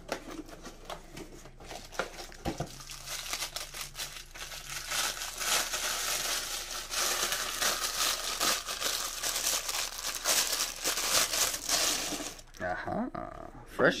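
Plastic wrapping crinkling and rustling as a new piston is unwrapped by hand from its cardboard box, quieter at first and fuller and louder for the second half.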